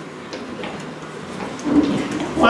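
Theatre room noise with faint shuffling and scattered light taps as performers move about the stage, and a voice starting near the end.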